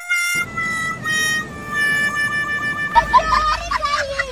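Music: a short run of long held notes, each stepping a little lower in pitch, followed about three seconds in by a high, wavering voice.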